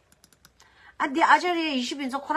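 A few faint, quick clicks in the first half second, then a person talking from about a second in.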